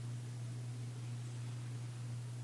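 Steady low hum with a faint even hiss, unchanging throughout, with no other sounds.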